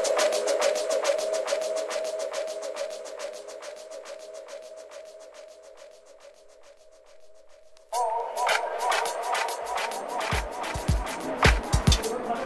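Music from a vinyl 45 DJ set: a held chord fades slowly after the beat drops out. About eight seconds in, a restarted record comes in suddenly, with kick drums joining about two seconds later.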